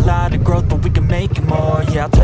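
Suzuki Raider 150 Fi motorcycle engine running on the move, under a hip-hop track with rapped vocals and a steady beat.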